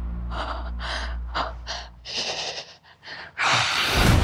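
A woman gasping for breath in a string of short, sharp gasps, ending in a longer, louder gasp, over a low music drone that fades away.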